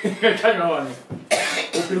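People talking, with a short, sharp cough about a second and a half in.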